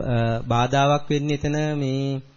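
A man's voice intoning in a chant-like way, holding syllables at a steady pitch in several long stretches with short breaks between them.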